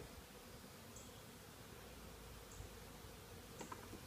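Faint, steady buzzing of honeybees flying around an opened hive, with a faint tick near the end.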